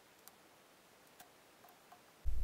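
Near silence: room tone with a few faint, brief clicks scattered through it.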